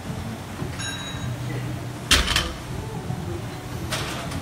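Loaded barbell with bumper plates on a gym floor: a faint metallic clink about a second in, then one heavy thud of the bar coming down about two seconds in, over steady gym background noise.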